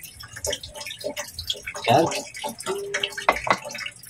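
Milkfish pieces being put into a metal pot of water: small irregular splashes and knocks of fish against the pot and water.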